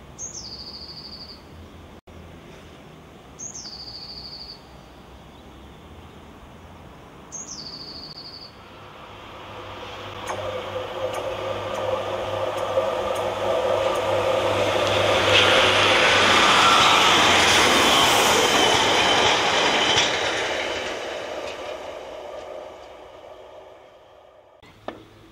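A train passing along the railway line, its noise building from about nine seconds in to a peak in the middle and fading away near the end. Before it, three short high whistles, each dropping in pitch and then holding for about a second, a few seconds apart.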